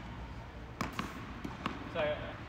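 Tennis ball bouncing on a hard court, a few short sharp bounces about a second in and again near the end.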